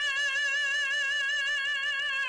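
An opera singer holding a single high sustained note with a steady, even vibrato.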